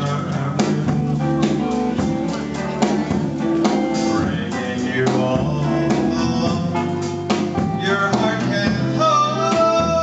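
Live country band playing, with guitar and a drum kit keeping a steady beat, and a male voice singing in places; a long held note near the end.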